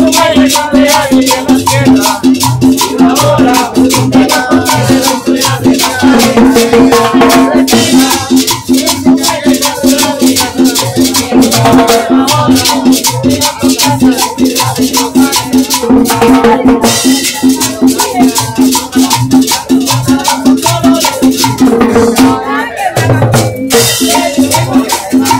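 Live cumbia from a small street band: a steady dance beat of shaker and scraper percussion over sustained horn notes, playing without a break.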